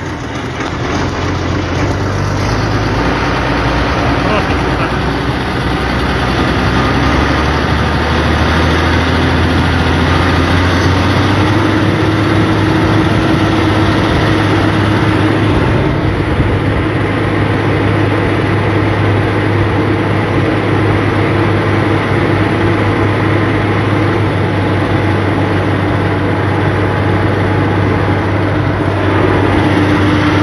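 Farm tractor's diesel engine running while driving, heard from aboard: a steady low drone whose pitch rises about ten to twelve seconds in and then holds.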